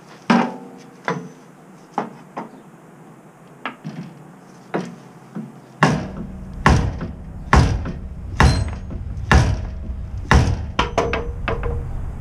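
Sledgehammer striking a stuck boat trailer spindle with metal-on-metal blows that ring after each hit. The first blows are lighter and irregular; from about halfway they come heavier and evenly, roughly once a second.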